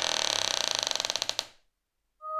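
A long, drawn-out creak like a slowly swinging door, its grating pulses speeding up until it fades out about a second and a half in.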